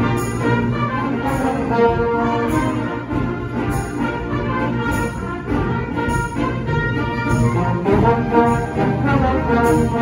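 Concert band playing, with trombones, trumpets and horns to the fore over the woodwinds and a regular beat. Recorded live from the audience.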